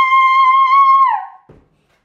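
A boy's long, high-pitched scream held on one steady note, then dropping in pitch and fading out a little over a second in.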